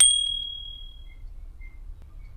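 A single bright bell ding, the notification-bell sound effect of a subscribe animation, struck once and fading away over about a second.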